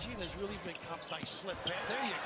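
Basketball game broadcast audio playing at a low level: a commentator's voice with a few short, sharp knocks from the court.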